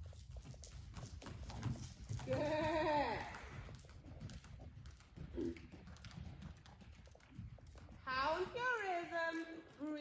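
Muffled hoofbeats of a cantering horse on arena sand, with a drawn-out wavering call about two seconds in. A voice starts speaking near the end.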